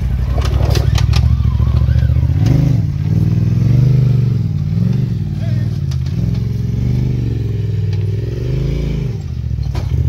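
Polaris RZR side-by-side's engine working under load on a steep dirt-and-rock climb: steady at first with a few knocks, then the revs rising and falling again and again from about two and a half seconds in as the throttle is worked.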